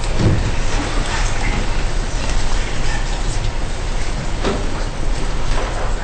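Steady room noise with a constant low hum, indistinct background voices and a few soft knocks from handling at the front desk.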